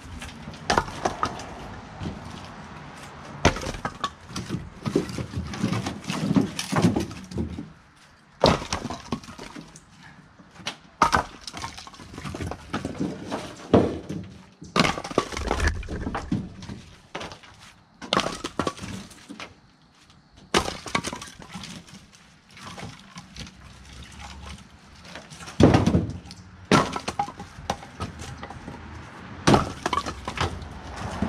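Split cherry firewood being thrown log by log out of a pickup bed, clattering onto a concrete driveway and onto the pile: irregular knocks and clacks, some single and some in quick clusters, with a few louder crashes.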